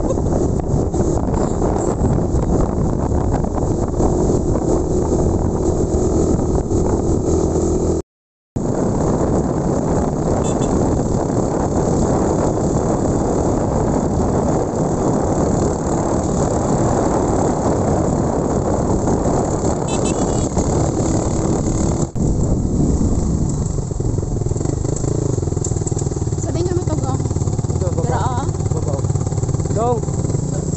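Motorcycle engine running on a ride, heavily mixed with wind buffeting the microphone. The sound cuts out completely for about half a second around eight seconds in, and from about two-thirds of the way through a steadier low hum comes forward.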